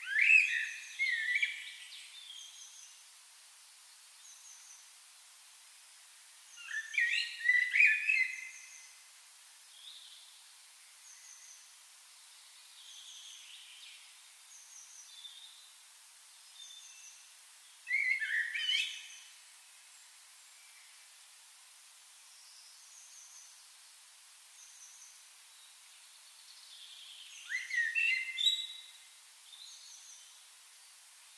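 A songbird singing short warbled phrases four times, each lasting a second or two, about nine to ten seconds apart. A faint, high, short note repeats steadily about every second and a half in between.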